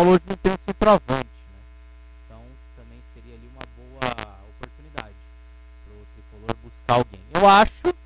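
Men's speech in short bursts, some of it faint, over a steady low electrical mains hum.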